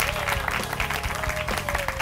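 Studio audience clapping, a dense steady patter of many hands, with the show's theme music running underneath.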